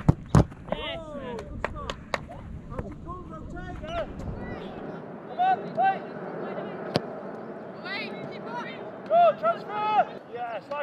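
Footballs struck and caught in goalkeeper training: several sharp thuds of shots and saves, the loudest about half a second in, with short shouted calls from players. A low rumble of wind on the camera microphone runs under the first half.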